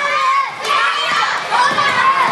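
Crowd of young children shouting and cheering together, many high voices overlapping, with a brief lull about half a second in.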